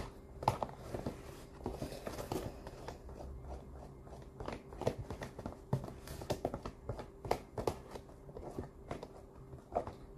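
A hand mixing a thick tortilla batter of flour, eggs and water in a plastic tub, making irregular soft squelches and small taps. A faint steady hum runs underneath.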